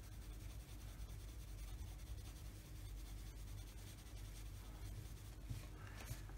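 A Koh-i-Noor Tri-Tone coloured pencil scratching faintly and steadily across paper in small blending strokes, working colour over a watercolour layer.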